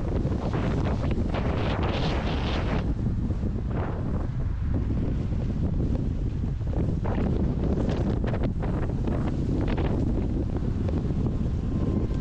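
Steady wind buffeting on a mountain bike's camera microphone while riding, with the bike's tyres rumbling over a dirt and leaf-covered trail. Brief crackles and rattles come through a few times, most in the first three seconds and again around seven to eight seconds in.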